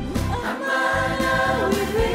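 Several voices singing together through microphones over amplified backing music, holding long notes.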